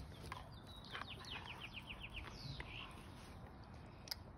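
A songbird singing faintly: a quick run of about eight down-slurred notes about a second in, repeated at an even pace.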